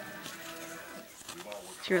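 A person's voice humming one steady low note for about a second.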